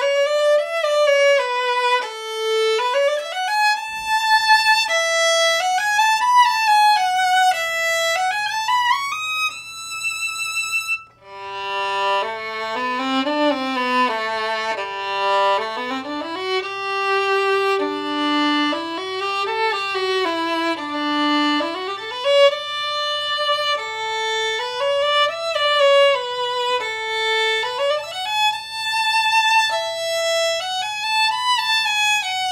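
Solo bowed violin, a Holstein Workshop Plowden, playing a fiddle tune melody. About eleven seconds in the sound cuts to a second Plowden violin strung with Pirastro Obligato strings, whose melody reaches lower notes.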